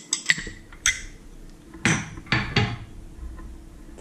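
Small gilt-rimmed porcelain bowls clinking against each other as they are handled and set down. There are a few light, ringing clinks in the first second, then three duller knocks in the middle.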